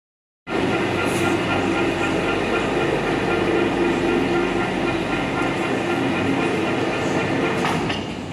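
Electric overhead crane running while it carries a slung load: a loud, steady machine sound with several held whining tones. It starts suddenly about half a second in and eases off near the end.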